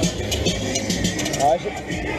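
New World XXL fairground ride in motion, heard from the seat: a steady low rumble and noise rush, with fairground music playing behind. A rider lets out a short "ah" near the end.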